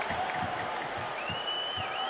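Hockey arena crowd cheering and applauding during a fight. Little more than a second in, a long high whistle rises above the crowd, holds, and dips in pitch once.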